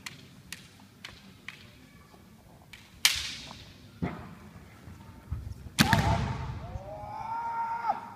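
Bamboo shinai tips clicking lightly together a few times, then a loud sharp crack of a strike about three seconds in. About six seconds in comes a second, louder strike with a heavy thud, followed by a long drawn-out kiai shout.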